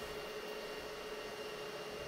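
Steady low hiss with a faint constant hum from an Anycubic Kobra 3 3D printer's cooling fans, idling with the nozzle held at 250 °C while the printer sits stopped on an error.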